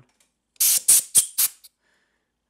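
Compressed-air blow gun giving a quick series of about five short hissing blasts, blowing debris off a VW engine case around the oil pump bore.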